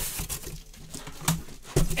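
Handling noise made of scattered light clicks and rustles, with a man's voice starting near the end.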